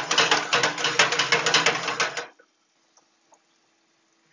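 Hand-twisted spice grinder ratcheting out seasoning in a rapid run of clicks for about two seconds, then stopping suddenly.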